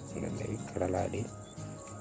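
A steady, high, pulsing chirp of crickets in the background, with a brief murmured syllable from a voice about a second in.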